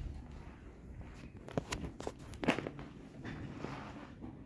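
Footsteps across a carpeted floor: a few soft, irregularly spaced steps and light knocks.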